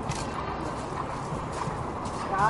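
Horse's hoofbeats as it canters across a grass show-jumping field: faint, irregular thuds over a steady outdoor background noise.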